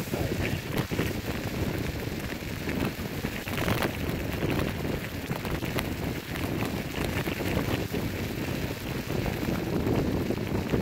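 Kick scooter's knobby tyres rolling fast over a wet gravel roadbase, a steady rumble with grit crackling and small ticks, while wind buffets the microphone.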